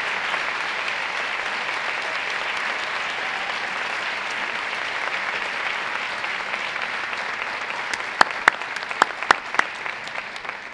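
A large audience applauding steadily, slowly thinning out, with about five sharp knocks close on the microphone near the end.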